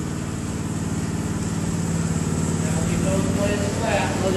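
Gas-engine walk-behind power trowel running steadily at low speed, its blades set flat for an easy finishing pass on fresh concrete.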